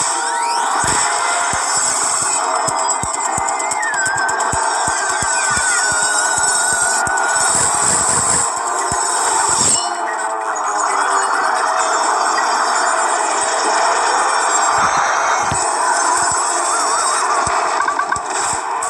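Cartoon soundtrack of music and sound effects. A wavering whistle drops in pitch about four seconds in and holds for a few seconds, over many sharp clicks.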